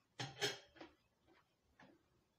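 Eating noises from hand-eating: a quick run of sharp clicks and crackles starting about a quarter second in, then a few fainter ticks.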